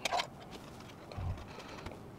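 A single sharp click right at the start, then faint handling noise from hands working inside a PC case as they reach for the graphics card.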